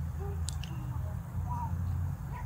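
Outdoor background noise: a steady low rumble, with a few faint short chirps and a light click about half a second in.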